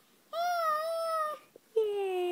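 A baby's voice: two long, drawn-out vowel calls. The first is held at a fairly steady pitch for about a second, and the second starts near the end and slides down in pitch.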